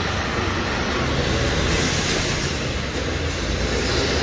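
Busy city street traffic: a heavy delivery lorry and a double-decker bus running close by, a steady low engine rumble under road noise. A hiss swells briefly about two seconds in.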